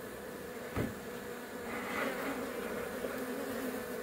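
Swarm of Africanized honeybees buzzing in a steady hum as it crowds over the entrance of a wooden Langstroth hive box and moves inside, settling into its new hive.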